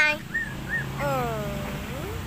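Young puppy crying: a loud cry cut off at the very start, two short high yelps, then a long whine that falls in pitch about a second in.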